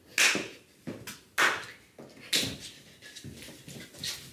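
Sneakers stomping and scuffing on a parquet wood floor during an improvised dance, in several sharp, irregular bursts about a second apart.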